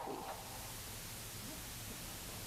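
A pause in speech: faint, steady room tone and hiss, with the reverberant tail of the last spoken word dying away just at the start.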